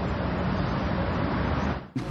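A steady rushing noise, heaviest in the low end, that cuts off abruptly just before the end.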